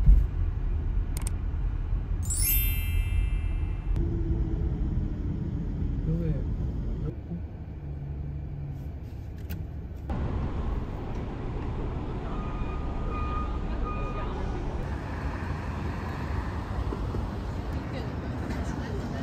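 City traffic ambience: steady road and vehicle noise from a car driving on an expressway, with a brief high squeal about two and a half seconds in, then the street sound of passing traffic after a cut about ten seconds in.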